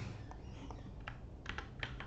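A few soft computer keyboard keystrokes over a low background, most of them close together about one and a half seconds in, as prepared code is pasted into a file.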